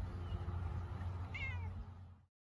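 A cat held in someone's arms meows once, a short call falling in pitch about a second and a half in, over a steady low background hum.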